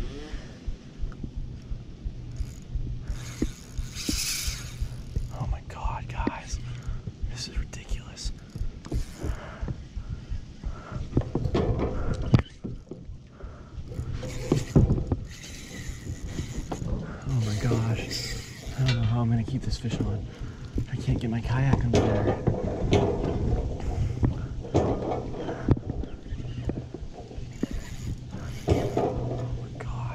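Spinning reel clicking and ratcheting rapidly in a busy, uneven stream, its drag and gears working while a large hooked tarpon pulls against the line.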